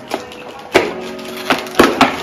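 Clear plastic wrapping around a boxed tea set is pulled at, giving three sharp crinkles a second or so apart, the loudest near the end. Soft background music plays under it throughout.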